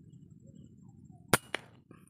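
A single shot from a scoped hunting rifle: one sharp crack, followed about a fifth of a second later by a second, weaker crack.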